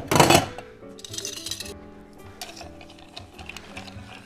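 Ice cubes clattering into a stainless-steel mixing tin: a loud rattle at the start and a second, lighter one about a second in, over background music.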